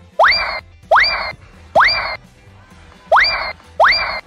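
A comic cartoon sound effect, a short rising 'boing'-like swoop, played five times in an uneven rhythm, each copy identical.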